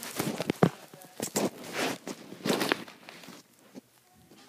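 Handling noise close to the microphone: irregular rustling and scraping with several sharp knocks, loudest in the first three seconds, then quieter.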